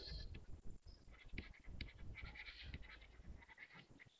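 Faint scratching and ticking of a stylus writing by hand on a tablet computer's screen, a run of short strokes.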